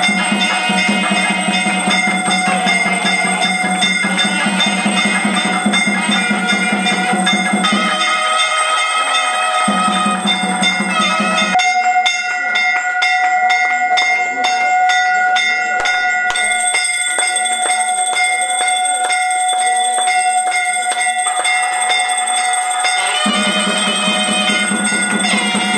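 Brass puja hand bell (ghanta) rung during aarti, its ringing tones sustained over devotional music. About halfway through, the bell strokes come fast and even.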